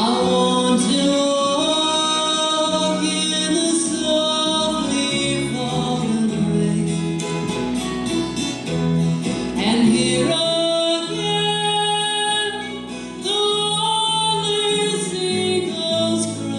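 Live folk band playing a song on acoustic guitars, mandolin and electric bass, with singing.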